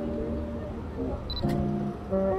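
Canon EOS M50 Mark II camera taking a shot: a short high beep as the focus locks, then a single shutter click right after it, a little past halfway.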